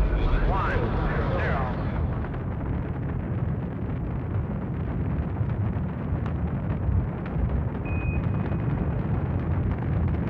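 A deep boom at the start, a voice crying out for about a second and a half, then a steady deep rumbling rush.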